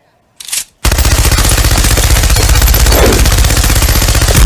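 Machine gun firing a long, rapid, continuous burst of shots that begins about a second in, after a brief noise just before it.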